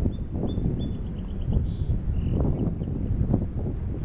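Song sparrow singing one song: a run of repeated clear high notes, then a short buzz and a few higher and lower notes, ending a little over halfway through. Wind rumbles on the microphone throughout, louder than the song.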